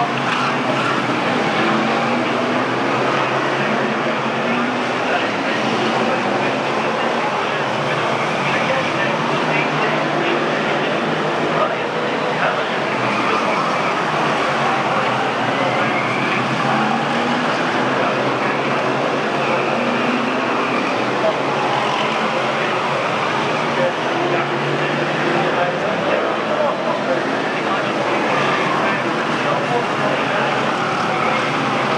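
A pack of BriSCA F1 stock cars racing on the oval, their V8 engines running hard together in a dense, continuous noise, with engine notes repeatedly rising and falling as the cars accelerate out of the bends.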